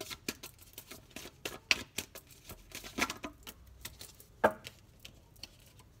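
A deck of oracle cards being shuffled by hand: an irregular run of light clicks and snaps as the cards slide and strike against each other. There is a sharper snap under two seconds in and another a little past the middle.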